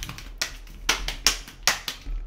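A paper Kool-Aid drink-mix packet smacked five times in about a second and a half, sharp snapping slaps that knock the powder down to the bottom before it is torn open.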